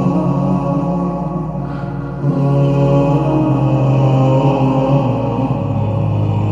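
Slowed, reverb-heavy nasheed sung by layered male voices, holding long sustained chords with no clear words. About two seconds in the sound swells and a lower held note enters beneath.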